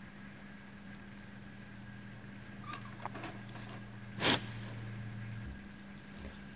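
Quiet potting-handling noises: a few faint scattered clicks, then a single sharper knock about four seconds in, as pumice pieces and a plastic cup are handled. A low steady hum runs underneath.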